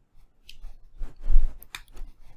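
A few short rustling, scraping noises close to the microphone, the loudest about a second and a half in with a dull low thump under it.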